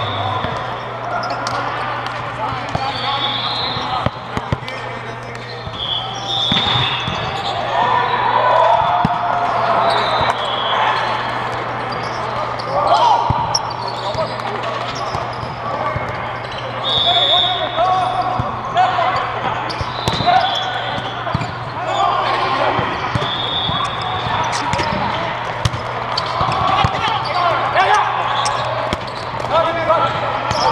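Indoor volleyball rally: players' voices and calls, the ball being hit, and short high squeaks of shoes on the court, over a steady low hum.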